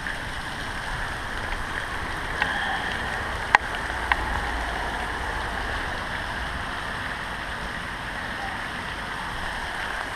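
Steady rain falling, an even hiss, with a few sharp taps about two and a half, three and a half and four seconds in.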